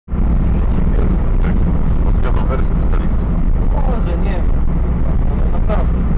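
Steady low engine and road rumble inside the cabin of a moving car, with a voice talking quietly over it at times.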